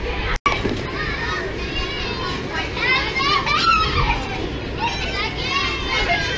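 Many children shouting, squealing and chattering at play, their high voices overlapping, busiest in the second half. The sound drops out for an instant about half a second in.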